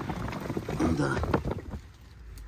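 Plastic tarp rustling and crinkling as it is lifted and handled, with irregular short crackles and low rumble.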